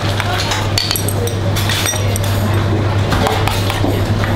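A metal spoon clinking against a stainless steel mixing bowl as a sauce is mixed, a few short clinks, over a steady low hum.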